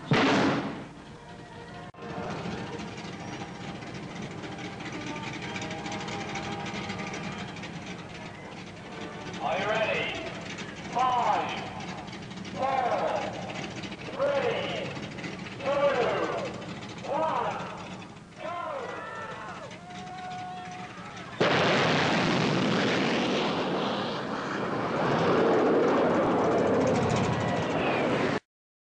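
Rocket dragster's hydrogen peroxide rocket engine firing for a run: a sudden, loud rushing roar starts about 21 seconds in and holds steady for several seconds.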